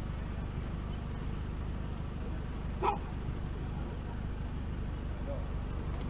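A police dog, a Belgian Malinois, gives one short bark about three seconds in, over a steady low rumble.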